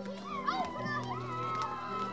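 Young children's voices chattering and calling out over one another, laid over sustained background music.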